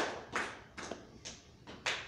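A few scattered handclaps that thin out and die away over the first second and a half.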